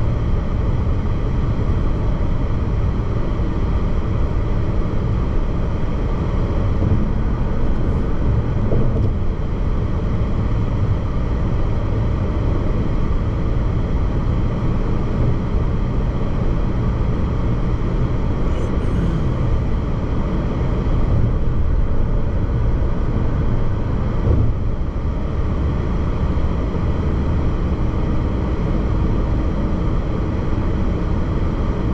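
Steady road noise from a car cruising at highway speed, heard from inside the cabin.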